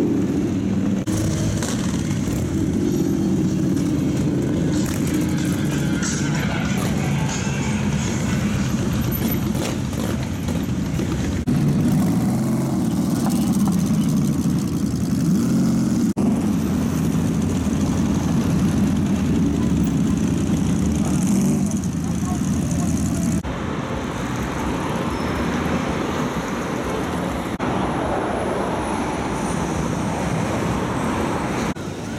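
Several motorcycle engines running in a column, with voices of people around them. The sound changes abruptly several times.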